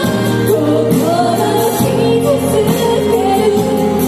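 A woman singing a slow song into a microphone over instrumental accompaniment, heard through the stage PA speakers, with long held notes that glide in pitch.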